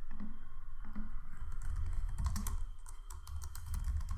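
Typing on a computer keyboard: a quick run of keystrokes, densest in the middle, over a low steady hum.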